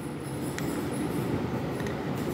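A steady low hum of background noise, with two faint clicks about half a second in and near the end.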